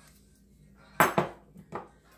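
Two sharp clinks in quick succession about a second in, then a softer one near the end: small glass extract bottles knocking on the countertop as one is set down and another picked up.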